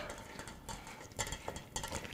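Spoon pressing soft cooked apple pulp through a strainer in a pot: faint, irregular taps and scrapes of the utensil against the strainer, a few of them in the second half.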